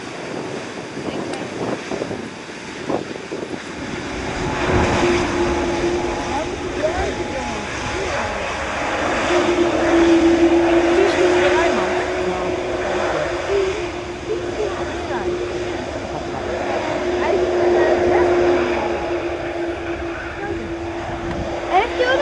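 Boeing 787-8 Dreamliner's jet engines in reverse thrust during the landing rollout: a broad rushing noise with a steady hum that sets in about five seconds in, swelling to its loudest around ten to twelve seconds.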